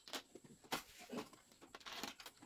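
Mahjong tiles clicking, several short sharp clacks as tiles are picked up and set down on the table.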